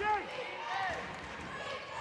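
Faint, scattered voices of players and spectators echoing in a gymnasium during live basketball play.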